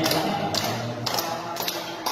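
Several people clapping hands together in a steady beat, about two claps a second. Group singing trails off during the first second.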